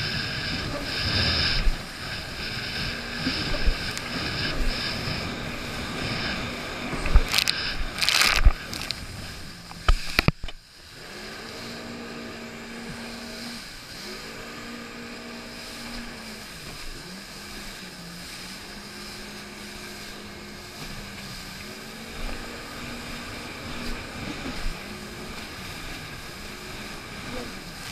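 Jet ski engine running over choppy water, with rushing water noise and a few sharp slaps of the hull on the waves about seven to eight seconds in. About ten seconds in the sound drops suddenly to a quieter, lower engine note whose pitch dips and recovers every second or two.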